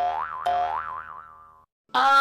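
Two cartoon 'boing' sound effects about half a second apart, each a twanging tone that wobbles up and down in pitch and fades away over about a second.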